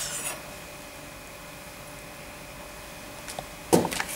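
A carving knife briefly rasping through roast meat onto a wooden chopping board, then faint steady room tone with a light hum, broken by a short thump near the end.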